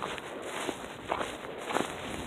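Footsteps of a person walking on a packed-snow trail, a step roughly every half second.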